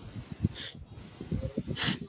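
Two short breath noises close to a microphone, about half a second in and near the end; the second is longer and louder. Low, irregular knocks sound underneath.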